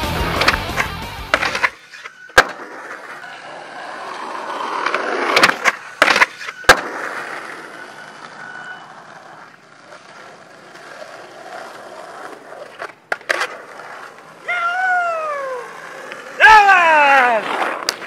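Skateboard wheels rolling on concrete, with sharp pops and landing slaps of the board several times. The music cuts off within the first two seconds. Near the end come two long falling tones, the second louder.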